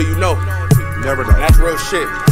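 Hip-hop beat: a heavy low bass note that cuts off under a second in, kick drums, and a pitched, sliding vocal line over a sustained backing.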